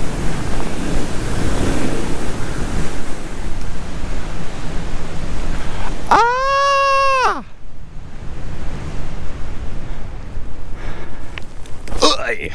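Airflow rushing over the microphone during an engine-off paramotor glide approach, easing off about two-thirds of the way through as the wing slows near the ground. About six seconds in, a single held tone, steady in pitch with a slight bend at its start and end, sounds for just over a second.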